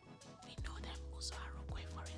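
Quiet background music holding low sustained notes, coming in about half a second in, with a faint whisper over it.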